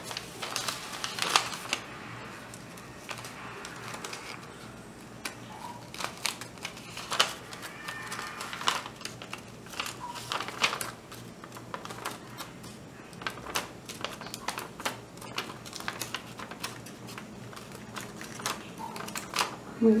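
Paper sewing pattern being folded and creased by hand, with light crinkles and clicks at irregular intervals.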